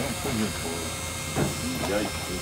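Steady hum and hiss of the blower fan of an inflatable lawn decoration, with faint voices over it.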